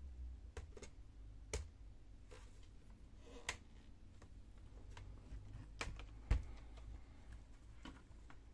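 A few light plastic clicks and taps as a plastic pry tool works the ribbon-cable connectors free between a laptop's keyboard panel and motherboard. The loudest is a sharper knock about six seconds in.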